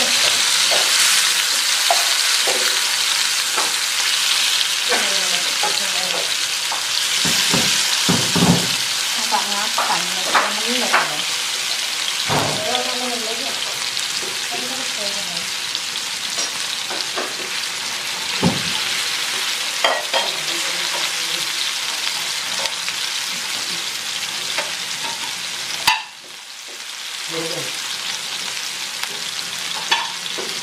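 Bacem tofu and tempeh frying in hot oil in a non-stick frying pan: a steady sizzle with scattered taps and scrapes of the spatula as the pieces are moved. The sizzle drops out suddenly about 26 seconds in and builds back over the next couple of seconds.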